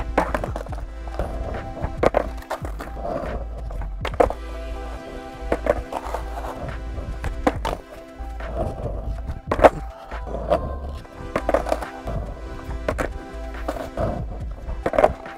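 Background music over skateboard sounds: the tail popping and the deck and wheels clacking and slapping onto asphalt in repeated fakie bigspin attempts, including a bailed board landing upside down. There are sharp clacks every second or two, and the loudest comes about two-thirds of the way through.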